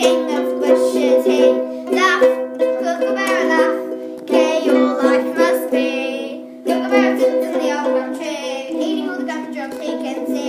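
Two ukuleles strummed together on a C major chord, with children's voices singing along. The strumming breaks off briefly about six and a half seconds in, then starts again.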